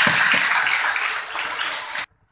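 A large group of schoolchildren applauding in thanks: dense, steady clapping that eases slightly and cuts off suddenly at the end.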